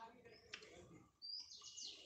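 Faint bird chirping: a single short high note, then a quick run of short falling notes near the end.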